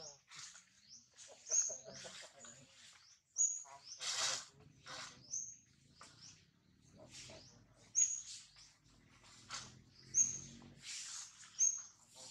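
A small bird giving short, high chirps, one about every two seconds, over scattered rustling.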